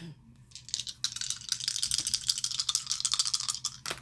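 Astrology dice shaken in cupped hands, a rapid clicking rattle for about three seconds, then cast onto the card spread with a sharp click near the end.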